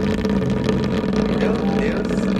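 Knock-off Foreo-style silicone facial cleansing brush switched on and resting on a tabletop, its vibration motor giving a steady buzz.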